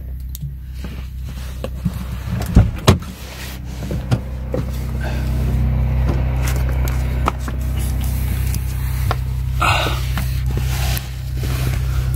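Clicks, knocks and scuffs of hands working around a car's open door and under the dashboard, over a steady low hum. Two loud knocks come about two and a half seconds in, and a short scuffing rush comes near ten seconds.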